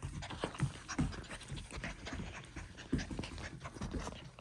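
F1b goldendoodle puppy panting and scampering across a tile floor: a busy, irregular run of short breathy and scuffling sounds.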